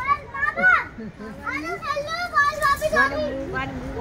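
A young child's high voice talking and calling out in short phrases.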